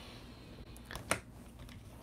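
Quiet room tone with two light clicks close together about a second in.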